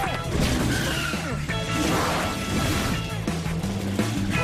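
Cartoon background music with slapstick crash and impact sound effects as a crate on a skateboard comes down onto the road.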